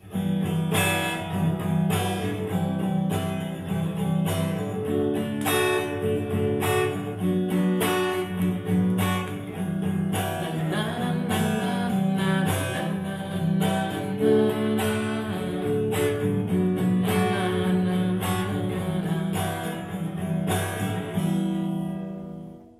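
Acoustic guitar playing a tune, with picked and strummed chords ringing on. It is a song idea being tried out while the song is still being written.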